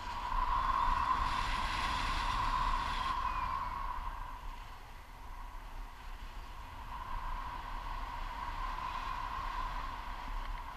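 Airflow rushing over an action camera's microphone during a tandem paraglider flight. It is loudest in the first few seconds, eases off about halfway, then builds again.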